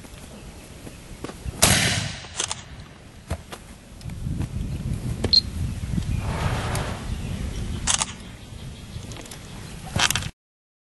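Two handgun shots fired above a horse's head: a loud crack with a short ringing tail about two seconds in, and a smaller one near the end. In between there is a stretch of low rumbling noise.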